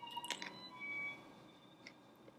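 Faint sounds of biting into and chewing a soft spinach tortilla wrap, with a few small mouth clicks just after the start. A short, thin high tone sounds about a second in.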